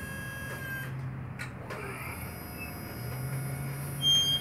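The battery-driven DC hydraulic pump motor of a Genie TZ-34/20 spider lift running with a steady low hum as the boom moves, pausing for about a second in the middle and starting again, with a single click about one and a half seconds in.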